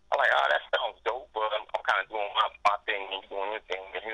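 Speech only: a man talking continuously.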